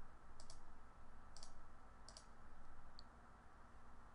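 About six faint, sharp clicks, some in quick pairs, over a quiet steady low hum.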